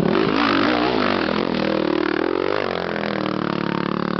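Motocross bike engine revving, its pitch rising and falling with the throttle.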